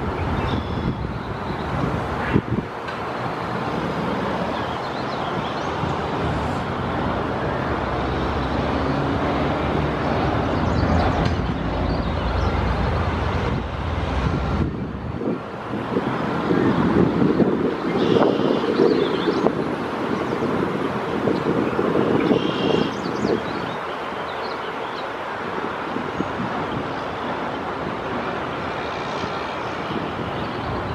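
Steady road traffic noise with wind on the microphone, swelling louder for several seconds past the middle.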